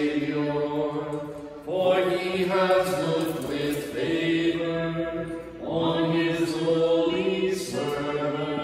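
Slow liturgical chant sung in long, held phrases, with a short break for breath about every four seconds.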